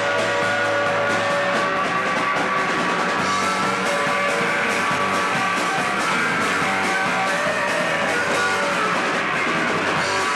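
A rock band playing live: electric guitars holding and changing notes over a drum kit with steady cymbal and drum hits.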